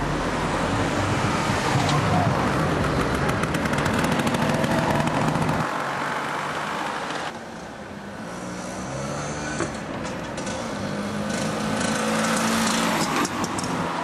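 Scooter engine running on the move with wind rushing over the microphone. The engine and wind ease off about halfway through, then build again as it picks up speed.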